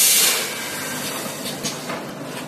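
Vertical pouch packing machine running: a sharp hiss of air lasting about half a second at the start, then a steady machine hum with a couple of light clicks near the end.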